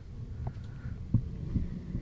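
Handling noise from a desk-clamped scissor boom arm being swung and set in place: a low rumble with a few soft thumps and small clicks.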